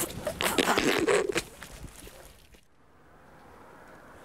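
Rustling and scraping with small clicks, from a padded jacket rubbing close against the camera microphone as the camera is moved. It is loud for about a second and a half, then fades to quiet.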